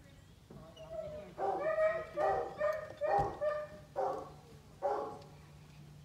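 A dog barking: a quick run of about seven short barks, starting about a second in and stopping about five seconds in.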